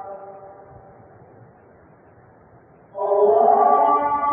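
A man's chanted voice holds a long drawn-out note that fades away in the first half-second. A low hiss of background noise follows, then a loud new long-held chanted phrase begins about three seconds in.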